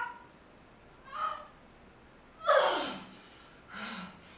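A person's wordless vocal sounds: short gasping cries about a second in and near the end, and a louder cry about two and a half seconds in that slides steeply down in pitch.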